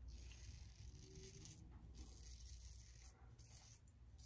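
Faint scratchy rasp of a Gillette Heritage double-edge safety razor cutting through lathered stubble, drawn across the grain in short strokes.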